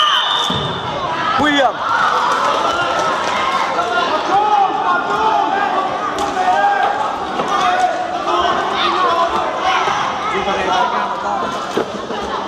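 Futsal ball being kicked and bouncing on a hard indoor court, with the knocks echoing in a large hall. Children's and spectators' voices call out all the while.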